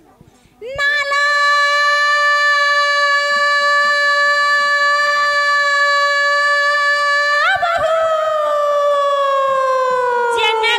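A woman's voice holding one long sung note through a microphone and loudspeaker. It starts about a second in and stays at one pitch for several seconds, then wavers and slides slowly downward near the end.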